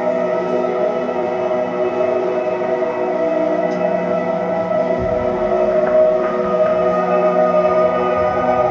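Live band music: a sustained ambient drone of steady held chords, with a low bass rumble coming in about five seconds in.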